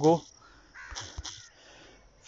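A bird calling faintly in the background, two short calls about a second in, just after a voice trails off.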